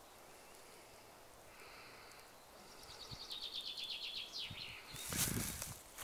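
A songbird singing a rapid, high trill that ends in a quick falling note, over faint outdoor background. Near the end comes a rustling noise close by.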